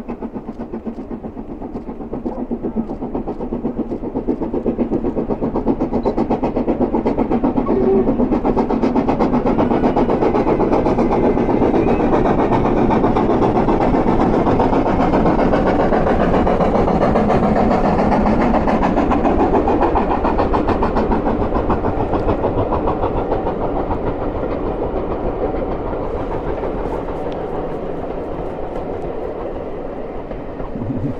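Steam locomotive working hard up the grade across a viaduct, its exhaust beating in a rapid, even rhythm over the rumble of the train. The sound grows louder as the train nears, is loudest in the middle, then slowly fades.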